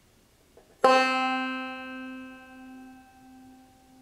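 A single middle C plucked on a banjo with fingerpicks, struck about a second in and ringing bright with many overtones. It dies away over about three seconds, the highest overtones fading first.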